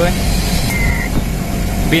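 Split air conditioner outdoor unit, its compressor and fan running with a steady low hum during a refrigerant pump-down.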